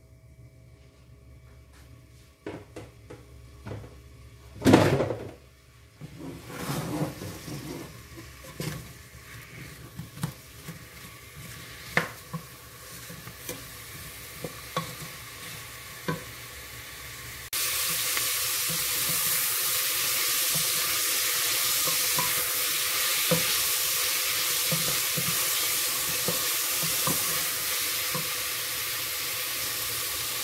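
Sliced onion frying in oil in an aluminium pressure-cooker pot, stirred with a wooden spoon that knocks against the pot, with one louder clatter about five seconds in. The sizzle is faint at first, then jumps suddenly a little past halfway to a steady, louder sizzle.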